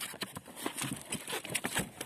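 Irregular small knocks and water dripping and splashing as a rope-tied float crusted with goose barnacles and weed is hauled out of the sea on a wooden pole beside a boat.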